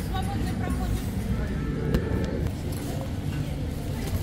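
Indoor railway station hall ambience: a steady low rumble with faint murmur of voices, and a single sharp click about two seconds in.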